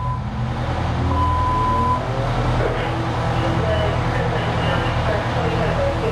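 Fire tower ladder truck's engine idling steadily, with a steady one-second beep about a second in and indistinct voices over it.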